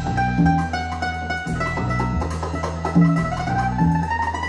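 Music played from a vinyl record on a Rega P2 turntable through a phono preamp, coming over floor-standing loudspeakers in the room. A repeating bass line and plucked string instruments play, and a tone slides upward near the end.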